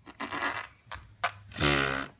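A person making a comic noise with the mouth: a breathy rasp, two small clicks, then a louder low buzzing rasp in the last half-second.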